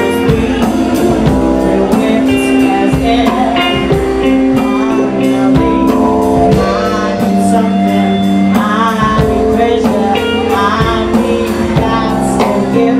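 Soul-funk band playing live: a woman singing over a steady drum beat and the band.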